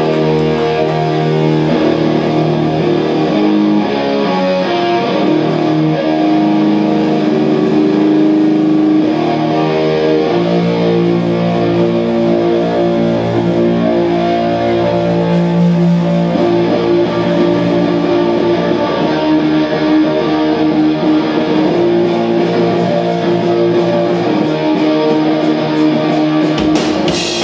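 Live rock band playing loud electric guitar, with held, ringing chords and notes that change every few seconds. A regular run of drum or cymbal hits comes in near the end.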